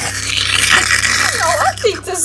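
A breathy hiss for the first second and a half, then a high-pitched character voice starting to speak, over a steady low electrical hum.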